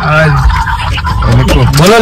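Mostly a man talking in Hindi, with a steady low rumble of a vehicle cabin underneath.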